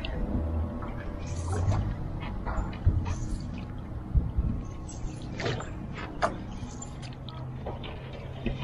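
Single-blade canoe paddle strokes in calm water: a series of short splashes and drips as the blade goes in and comes out, roughly one every second or so.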